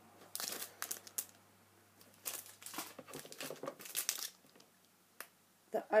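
Clear plastic stamp packets crinkling as they are handled and swapped, in a short spell near the start and a longer one from about two to four seconds in.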